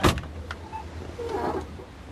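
A car door slamming shut with one sharp bang, over a low steady rumble. A smaller click follows about half a second later.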